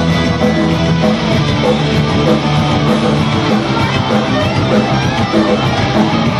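Live rock band playing loud, guitar-heavy music, dense and continuous.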